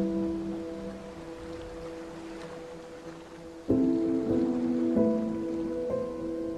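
Background music of soft, sustained chords, with new chords struck about four and five seconds in, over a steady hiss.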